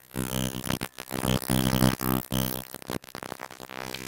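Ultrasonic skin spatula in clean mode buzzing as its metal blade is scraped over oiled skin on the nose: a low, steady-pitched buzz that stops and starts several times and is weaker near the end.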